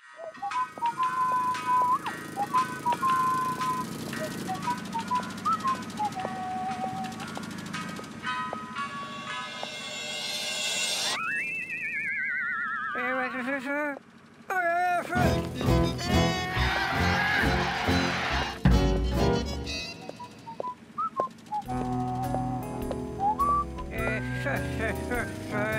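Cartoon soundtrack music: a simple high melody of held notes. About halfway a wobbling tone slides down in pitch, and busier music with quick hits follows.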